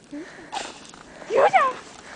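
A dog giving short, high yips and whines that rise and fall in pitch. A faint one comes near the start and louder ones about one and a half seconds in, excited cries while playing.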